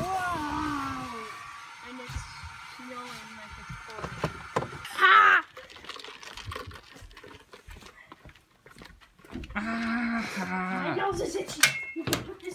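Indistinct voices, with one brief, loud, high-pitched cry about five seconds in. Clicks and knocks from handling come near the end.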